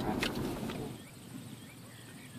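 Low rumble inside a moving car's cabin with a sharp click early on, cutting off about a second in to a much quieter open-air background.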